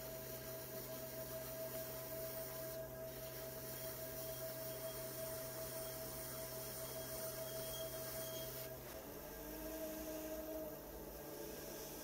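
Electric pottery wheel motor humming steadily, with the scratch of a loop trimming tool shaving leather-hard clay from the foot of an inverted bowl. The hum steps slightly higher in pitch about nine seconds in.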